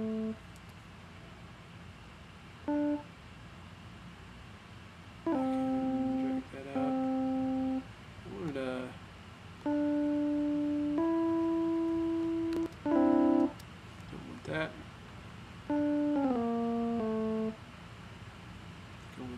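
Notes and chords from a Logic Pro software instrument, sounded one after another as MIDI notes are clicked and dragged in the piano roll. There are about eight held tones, some single notes and some chords, each lasting under a second to about a second and a half, starting and stopping abruptly with gaps between.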